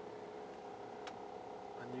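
Minivan engine idling, heard from inside the cabin as a steady hum, with a single sharp click about a second in.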